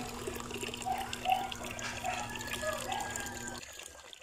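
Running water splashing into a pool, a steady rush that fades out near the end.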